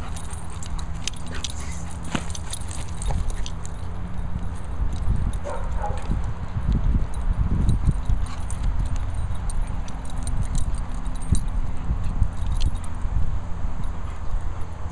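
A Weimaraner and a poochon playing on grass, with scattered scuffles and clicks and a brief high dog sound about five and a half seconds in, over a steady low rumble.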